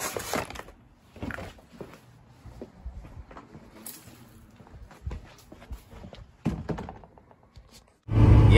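Paper grocery bags being handled and set down on a concrete doorstep: paper crinkling and scattered dull thunks, the loudest near the start and again about six and a half seconds in.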